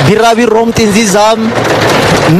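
Speech: one voice talking steadily, with no other sound standing out.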